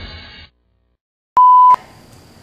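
Background music stops about half a second in. After a moment of dead silence, one loud electronic beep at a single steady pitch sounds for under half a second and cuts off sharply, leaving faint room noise.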